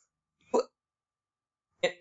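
Silence broken by one brief voiced sound from the speaker about half a second in, then speech resuming near the end.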